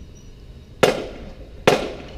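Two sharp, loud knocks, a little under a second apart, each dying away quickly.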